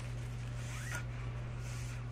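Short rustling swishes as a thin, sheer white sheet is handled and gathered in the hands, with a brief squeak near the middle. A steady low hum runs underneath.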